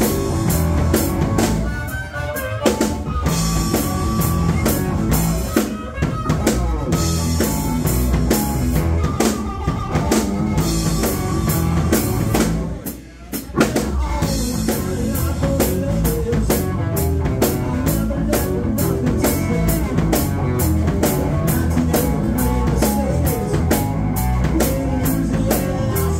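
Live rock band playing: drum kit, bass guitar and electric guitars, with a harmonica wailing over the top. The band drops out briefly about halfway through, then crashes back in.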